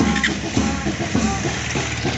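A drum beat keeps up a steady rhythm of about three to four beats a second over a low, steady hum.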